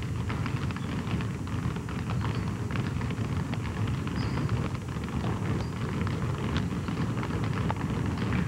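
Several basketballs being dribbled at once on a hardwood gym floor, a dense, irregular patter of overlapping bounces.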